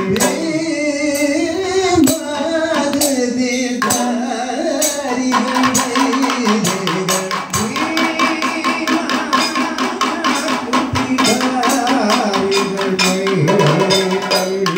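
Kathakali music: two singers sing to chenda and maddalam drums and a small gong and cymbals. About five seconds in, the drums and cymbals break into dense, rapid strokes under the singing.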